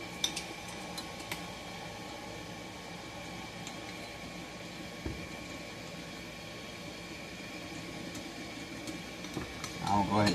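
Quiet workshop with a steady background hum. Over it come a few faint clicks of screws and small metal parts being handled on a chainsaw, and one soft knock about five seconds in.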